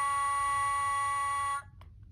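Orange Sing-a-ma-jig plush toy squeezed so that its electronic voice holds one steady sung note, which cuts off abruptly near the end even though it is still being held.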